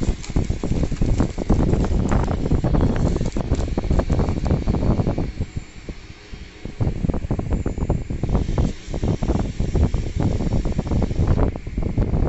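A plastic courier mailer and the paper comic inside it being handled and pulled out, with dense crinkling, rustling and bumps close to the microphone. It eases off briefly about halfway through.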